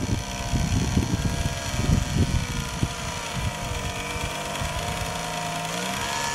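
Small 12-volt DC electric motor, powered from a solar panel, running with a brake load on it. It gives a steady whine that wavers slightly in pitch, over an irregular low rumble.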